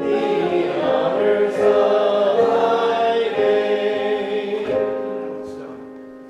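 A church congregation singing a hymn together in sustained notes; the singing fades out over the last second or so.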